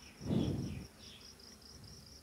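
An insect chirping steadily in the background, a high pulsing trill of about nine pulses a second. About a quarter second in, a brief muffled noise is the loudest sound.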